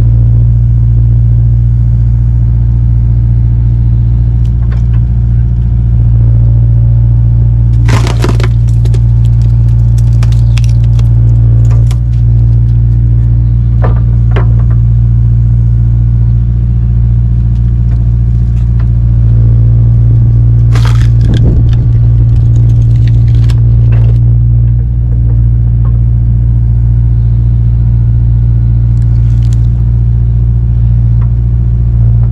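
Kubota KX057-4 excavator's diesel engine running steadily under hydraulic load while its Split Fire splitter wedge forces oak and cherry rounds apart. Loud cracks of splitting wood come about eight seconds in, a few more between ten and fourteen seconds, and another cluster around twenty-one to twenty-four seconds.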